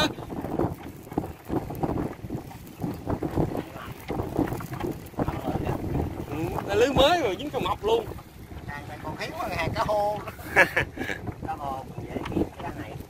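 Wind buffeting the microphone, with brief indistinct voices about halfway through and again near the end.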